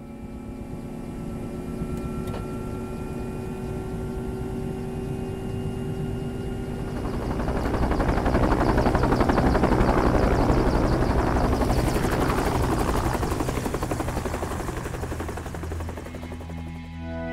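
Helicopter running: a steady whine at first, then from about seven seconds in the engine and rotor grow much louder with a fast, even chop, easing slightly near the end.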